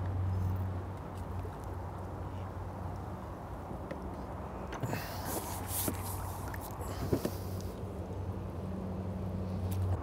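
A small skimmer bream splashing and water streaming off a landing net as the fish is lifted out, in a short flurry about five to six seconds in, over a steady low hum.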